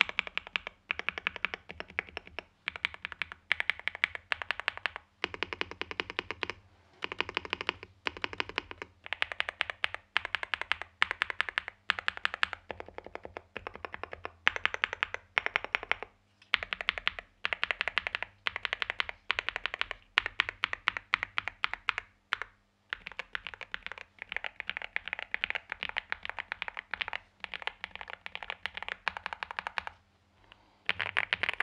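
NuPhy Gem80 mechanical keyboard with Mint switches, FR4 plate and mSA PBT keycaps, single keys such as Esc and Enter pressed repeatedly in rapid bursts of clacks, about one burst a second with short gaps between.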